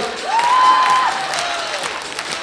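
Applause: many hands clapping, with a faint held musical tone that drops to a lower note about a second in.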